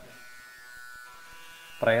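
A faint, steady buzz during a pause in a man's talk; his voice comes back near the end.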